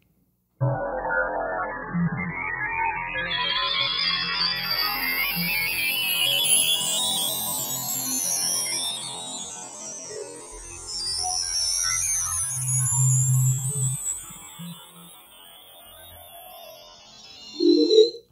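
Alchemy synthesizer's spectral engine playing an imported PNG image resynthesized as sound: a dense, noisy, sustained wash with high sweeps gliding upward and downward that cross each other, drawn from X-shaped strokes in the image. It starts about half a second in and fades low in the last few seconds. Not exactly great sounding, being the raw image sound before filtering and reverb.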